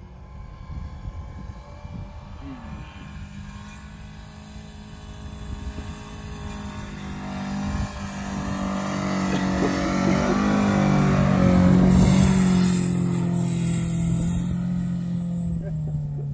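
1997 Subaru Impreza's naturally aspirated 2.0-litre flat-four boxer engine pulling hard in low-range gear as the car climbs a sand hill, getting steadily louder as it comes closer and loudest about three quarters of the way through. A thin high whine is heard at its loudest.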